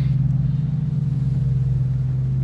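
A steady low mechanical hum, like a running engine or motor, holding one unchanging pitch.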